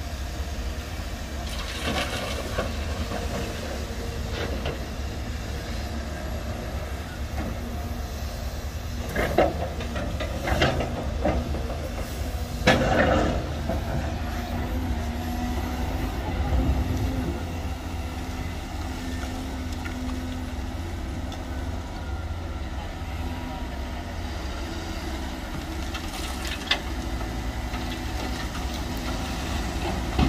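Diesel engine of a Cat hydraulic excavator running steadily as it digs and loads a dump truck, with a few louder knocks and clatters around the middle.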